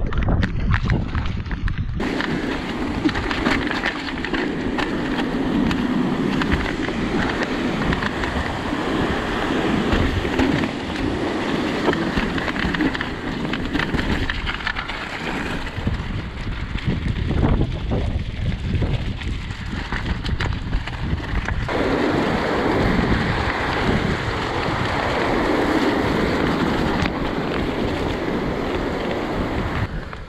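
Mountain bike descending a wet, rocky trail and stony track: tyres running over loose stone, with a continual clatter of knocks and rattles from the bike. Wind buffets the microphone throughout.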